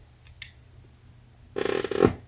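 A plastic action figure being picked up off a desk by hand: a couple of faint clicks, then a short plastic clatter and scrape near the end.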